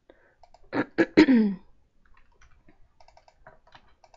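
A person clears their throat once about a second in, followed by faint, light taps on a computer keyboard as login details are typed.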